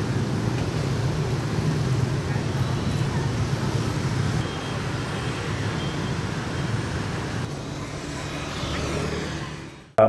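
Dense city-street motorbike and scooter traffic: a steady hum of many small engines, with a few short faint high beeps in the middle. It fades out near the end.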